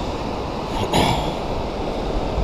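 Ocean surf washing on the beach, with wind buffeting the microphone in a low rumble; a brief louder hiss rises about a second in.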